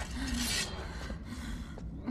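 A woman breathing heavily: one long, breathy gasp in the first half second, then quieter breath, over a steady low rumble.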